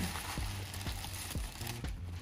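Crumpled tissue paper rustling and crinkling as it is pulled open by hand, with short crackles, over quiet background music.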